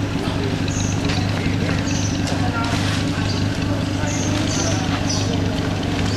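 A vehicle engine idling with a steady low hum, with a few scattered knocks and several short high chirps over it.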